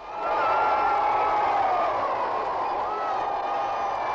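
Large crowd cheering and shouting, a dense, steady clamour of many voices that swells up in the first half second.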